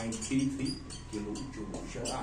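Marker pen squeaking and scratching on a whiteboard in short strokes as numbers are written, with a low murmuring voice under it.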